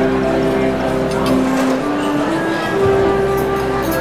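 Electronic keyboard played live: a slow melody of long held notes over sustained chords.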